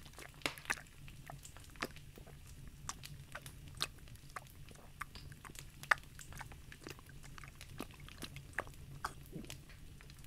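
A person making faint wet mouth sounds of a dog lapping up water, acted close to the microphone: irregular little clicks and slurps, one to a few a second.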